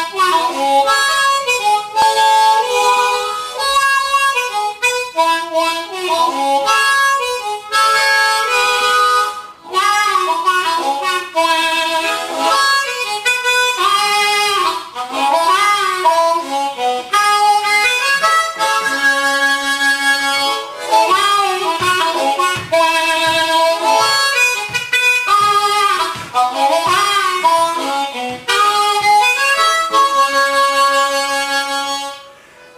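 Suzuki Harpmaster diatonic harmonica played in a fast blues line, with notes bent down and back up in pitch several times. The playing drops out briefly about nine seconds in and then carries on.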